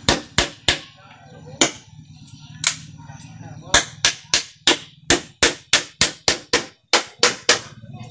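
Hammer blows on green bamboo poles, nailing them to a wooden beam. A few spaced strikes come first, then a quick even run of about three a second from a little before the middle, each with a short ringing tail.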